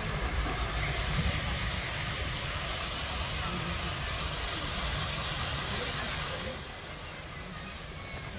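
Steady rush of water tumbling down an artificial stone-cascade waterfall, fading about six and a half seconds in.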